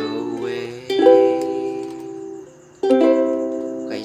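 Ukulele chords strummed one at a time and left to ring: three strums, the second about a second in and the third near three seconds, each dying away before the next.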